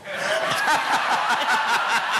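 A room full of people laughing together, many voices overlapping, the laughter swelling up at the start and holding steady.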